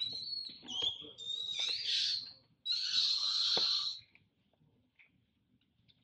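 Macaques screaming during a fight: thin high squeals for the first second and a half, then two harsher, rasping screams, the second the loudest and lasting about a second before cutting off about four seconds in.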